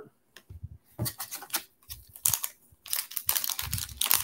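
Crackling and clicking of a foil Pokémon card booster pack wrapper being handled. Scattered clicks early on give way to denser crinkling in the second half.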